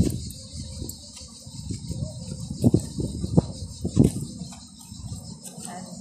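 Steady high-pitched insect buzz from the trees, with a few low thumps about two and a half, three and a half and four seconds in.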